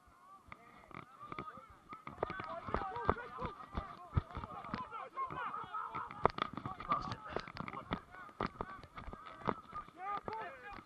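A flock of geese honking, many calls overlapping, starting about two seconds in and carrying on steadily, with frequent short knocks close to the microphone.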